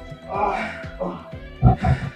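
Men laughing in a few short bursts over steady background music.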